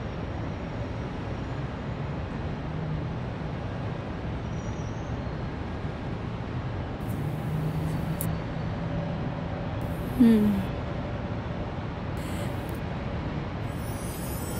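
Steady background noise of distant road traffic, with a low hum underneath. About ten seconds in, a short, louder sound falls in pitch.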